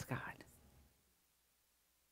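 A woman speaking one word at the start, then near silence: room tone.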